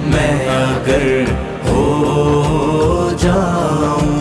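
Devotional naat chanting: layered male voices holding long sustained notes over a low drone, with no clear words.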